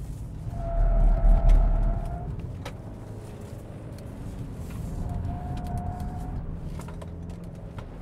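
Tyres of a 2023 Kia Sportage X-Pro squealing in a steady high tone while cornering hard, twice: first from about half a second to two seconds in, over a loud low rumble, then again briefly about five seconds in. Steady engine and road rumble are heard from inside the cabin throughout.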